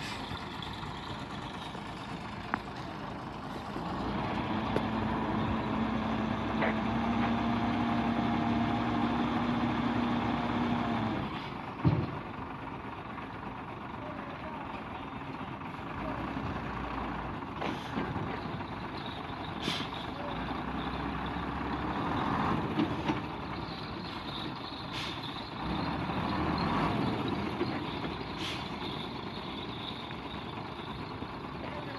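Multi-axle tipper truck's diesel engine running while its raised dump bed unloads sand, swelling louder in several stretches with a steady hum as it works. A short sharp burst about twelve seconds in.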